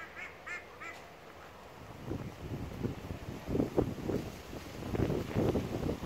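A duck quacking three times in quick succession at the start. From about two seconds in, a louder, irregular low rumbling takes over.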